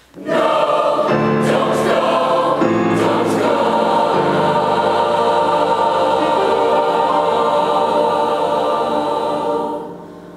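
Large mixed choir singing a full, sustained chord that comes in loudly just after the start and eases off near the end.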